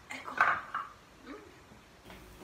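Black metal tubes of a tubular clothes rack clinking and knocking together as they are picked up and handled, with the loudest clank about half a second in and a lighter knock later.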